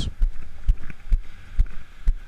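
Wind on an action-camera microphone and surf on a sandy beach, with soft low thuds about twice a second, evenly spaced.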